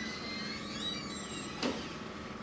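Steady room noise in a lecture room during a pause in speech, with faint thin high tones in the first second and a single short click near the end.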